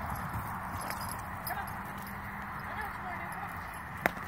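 Hoofbeats of a saddled horse on soft dirt as it lopes in circles on a lunge line, an irregular run of low thuds.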